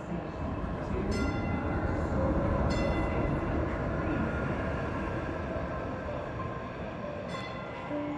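DART light rail train running: a steady low rumble with a faint whine of several steady tones above it, swelling about two to three seconds in and easing off, with a few sharp clacks.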